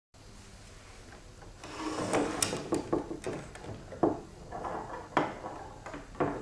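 An ōtsuzumi (Noh hip drum) being taken apart by hand: rubbing and scraping of its parts, with several sharp knocks and clicks, starting about one and a half seconds in.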